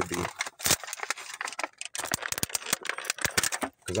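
Crinkling and crackling of a clear plastic package being handled: a dense, irregular run of sharp clicks.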